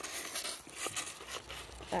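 Faint, irregular clicks and crunches from a dog mouthing a spiky rubber ball and shifting its feet on gravel.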